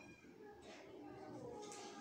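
Faint squeaks and strokes of a marker writing on a whiteboard.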